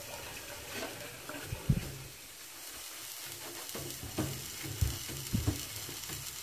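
Paper towel wiping a wet stainless steel sink, a few soft rubbing strokes and light knocks over a steady low hiss.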